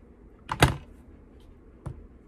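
Sharp clicks from handling a Joseph Joseph TriScale folding digital kitchen scale: a quick double click about half a second in, then a fainter single click near the end.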